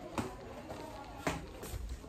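Two soft knocks about a second apart over faint background noise.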